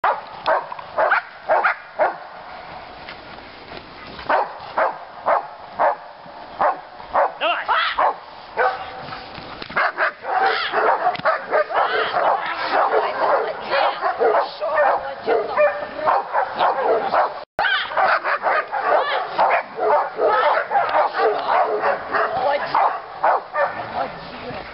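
German shepherd bitch barking repeatedly while working a helper's sack in bite training: short quick runs of barks at first, then almost continuous barking from about ten seconds in.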